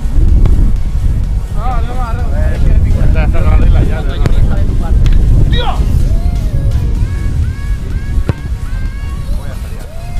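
Strong wind buffeting the microphone, a loud rumble throughout, with voices calling out over it and background music. One sharp knock about eight seconds in.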